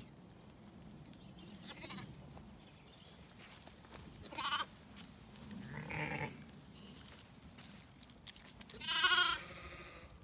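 Zwartbles sheep bleating a few times, short calls about four and six seconds in and the loudest, wavering bleat near the end.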